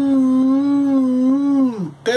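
A man's long, thoughtful hum, "hmmm", held on one steady pitch, then sliding down and stopping just before the end.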